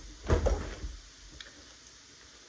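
A few short, heavy thumps close together just after the start, then a quiet room with one faint click near the middle.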